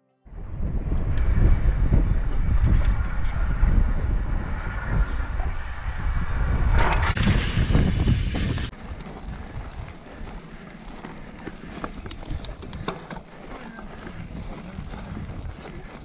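Mountain-bike riding filmed on action cameras: heavy wind rumble on the microphone for the first eight seconds or so, with a cut about seven seconds in. It then drops to quieter trail noise of tyres on dirt, with scattered clicks and rattles from the bike.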